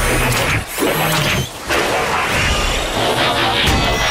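Animated robot transformation sound effects: mechanical clanks and shifting metal over background music, with two short drop-outs in the first second and a half.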